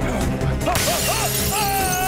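Film fight-scene sound: a shattering crash of breaking glass about three-quarters of a second in, over loud dramatic background music.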